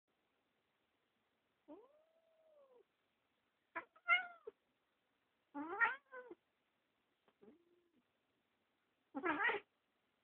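Domestic cat giving a string of about six short meows and yowls while play-fighting on its back, the first a longer call that rises and falls in pitch, the loudest near the middle and end.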